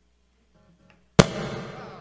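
A single sudden loud pop about a second in, as the acoustic-electric guitar's cable is pulled from its jack, followed by ringing that dies away over about a second.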